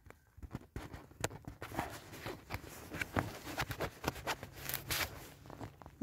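Irregular light rustles and taps of tarp fabric being handled while a Tenacious Tape repair patch is pressed and smoothed over a rip.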